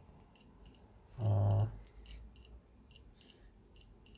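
Short, high-pitched electronic chirps repeating irregularly, two or three a second, and a brief low hum from a man's voice lasting about half a second, a little over a second in.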